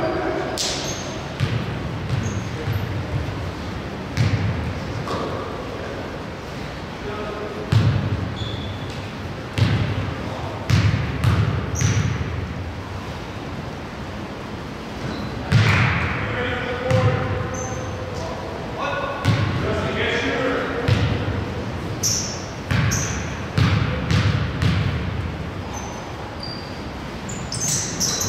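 Basketball bouncing on a hardwood gym floor, a thud every second or two that echoes through the large hall.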